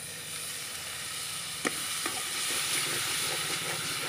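Onion-and-spice masala frying in hot oil in a pot, sizzling and hissing as a little water is poured in. The hiss is steady, with a single sharp click a little before halfway, after which it grows slightly louder.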